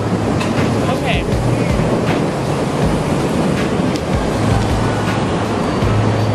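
Loud city street noise, a steady dense roar with wind rushing over the phone microphone and a low hum that comes and goes.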